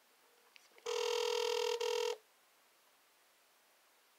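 Outgoing phone call ringing tone (ringback) from a phone's speaker: one steady ring about a second in, lasting just over a second with a brief break near its end, while the call waits to be answered.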